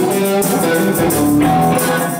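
A live rock band playing, with an electric guitar to the fore over drums.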